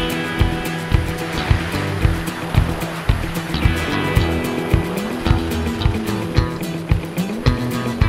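Loud hard rock music with fast, driving drums, bass and distorted guitar, playing without vocals.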